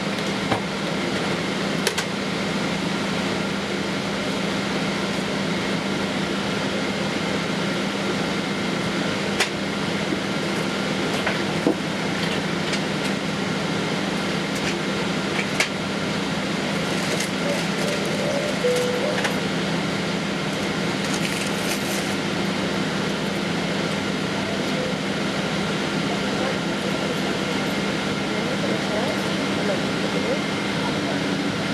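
Steady cabin noise inside a Boeing 777-200ER airliner taxiing: an even rush of air conditioning over a low steady hum, with faint steady high tones and a few light clicks.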